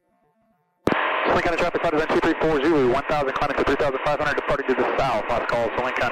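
A voice coming over the aircraft's radio, thin and narrow-sounding. It starts abruptly about a second in, after near silence, and talks continuously.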